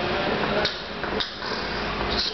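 A young boy beatboxing into his cupped hands: breathy hissing with two sharp percussive clicks about half a second apart.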